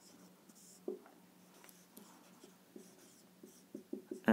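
Marker pen writing on a whiteboard: faint, short, irregular strokes and squeaks, over a steady low hum.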